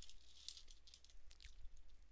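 Faint clicks and rattles of small plastic LEGO pieces being picked through by hand.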